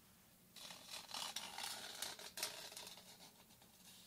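Fingernails scratching on a glitter-covered, egg-shaped Easter plaque, close to the microphone. The scratching starts about half a second in, with a few sharper clicks, and grows softer in the second half.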